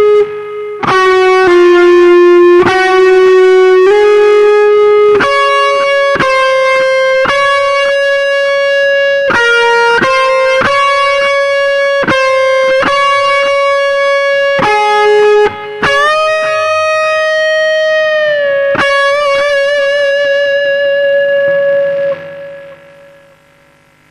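A Les Paul-style electric guitar playing a slow single-note lead melody with long-sustaining notes that change about once a second. About two-thirds of the way through, a string bend glides a note upward. A held note then wavers with vibrato, and the last note rings and fades out near the end.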